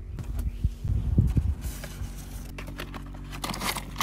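Handling noise: dull knocks and rustling in the first second and a half, then scattered sharp clicks and rustles as objects are picked up and the hand-held phone is moved, over a steady low hum.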